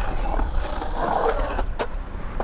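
Skateboard wheels rolling on a concrete bowl, with a steady rumble. A single sharp clack sounds near the end as the board reaches the lip and the skater goes airborne.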